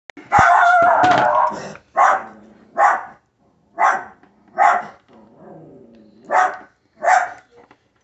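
A dog barking: one long drawn-out bark-howl, then six short barks at roughly one-second intervals.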